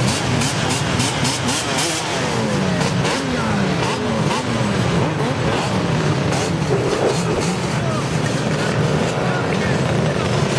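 A pack of dirt bike and ATV engines running together, several revving at once so their pitches rise and fall over one another above a steady drone of idling engines.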